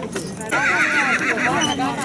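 A horse whinnying: a high, wavering call that starts about half a second in and lasts over a second, over the chatter of voices.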